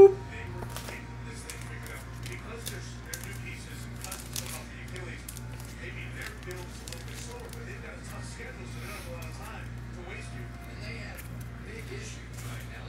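Faint small clicks and rustles of trading cards and plastic card holders being handled, over a steady low hum.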